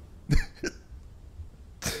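Two short throat sounds from a man, about a third of a second apart, then a burst of laughter near the end.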